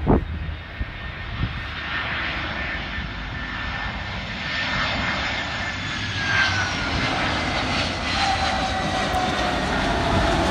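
Twin-engine jet airliner landing: a steady engine rush with a whine falling slowly in pitch, growing louder through touchdown and rollout. A short thump right at the start.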